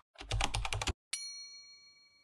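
Sound effects for an animated subscribe button: a quick run of keyboard-like typing clicks, then a single bright bell ding about a second in that rings on and fades.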